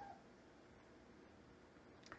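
Near silence: room tone, with one brief falling squeak at the very start.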